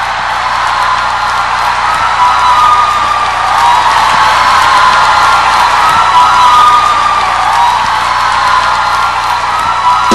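Concert crowd cheering, screaming and applauding loudly, with high voices rising and falling above the din.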